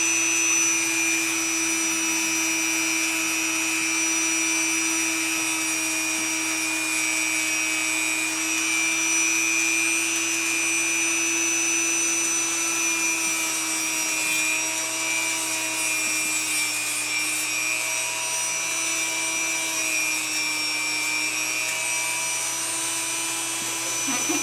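Dremel rotary tool running steadily with a whine, its grinding bit shortening and blunting a great horned owl's talons. The pitch wavers slightly in the second half.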